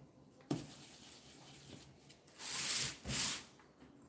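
A paintbrush dry-brushed with black paint, its bristles rubbing against a surface. There is a soft knock about half a second in, then light scrubbing, then two louder rubbing strokes near the end.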